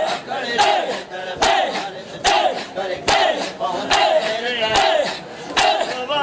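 Crowd of men chanting a mourning lament together while beating their chests in matam. The open-handed chest strikes land in a steady rhythm, a little more than one a second.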